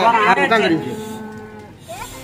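A woman's voice crying out in long, drawn-out rising and falling tones, fading away about a second in. Faint steady music tones come in near the end.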